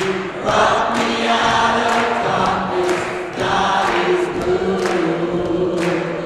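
Gospel choir singing sustained chords in long phrases, with sharp ticks on the beat about twice a second.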